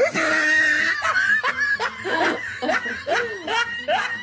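A woman laughing hard in a long run of short bursts, with the pitch swooping up and down.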